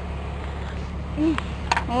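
Steady low outdoor background rumble, with a brief voice sound a little past halfway and a woman starting to speak near the end.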